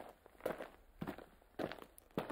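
Footstep sound effect dubbed over a stop-motion walk: four even steps, about two a second.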